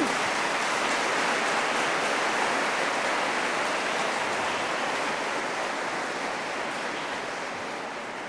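Audience applause: an even wash of clapping that builds and then slowly fades out. A man's brief cough comes at the very start.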